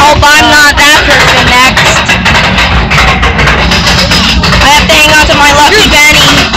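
Roller coaster car ride with a loud, steady rush of noise and rattle on the microphone. A wavering voice rises over it in the first second and again about five seconds in.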